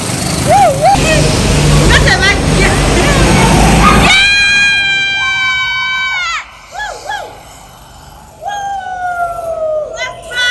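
Go-karts driving on an indoor concrete track. Engine noise fills the first four seconds, then a long high-pitched tyre squeal of about two seconds dips in pitch as it ends, and a shorter falling squeal comes near the end.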